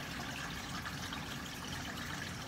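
Steady, even trickle of water from a running aquarium filter.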